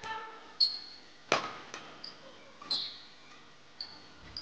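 Badminton rally: a shuttlecock struck by rackets, with one sharp hit about a third of the way in and lighter ones around it, and court shoes squeaking briefly on the hall floor several times.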